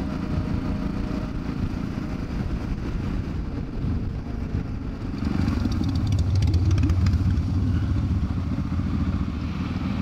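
Motorcycle engine running at low road speed, heard from on the bike. It gets louder about five seconds in.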